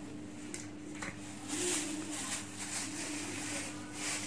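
A steady low electrical hum, with light clicks and short rustles from pastry dough and foil tart cups being handled at a hand-operated egg tart shell press.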